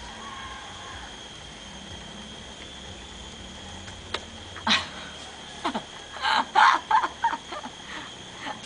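Short bursts of a woman's laughter in the second half, with a knock just before. A steady high-pitched hum runs underneath.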